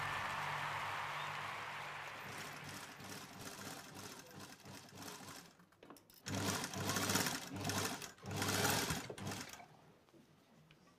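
Electric sewing machine running in four short bursts of stitching, from about six seconds in until near the end, after the fading tail of the title music.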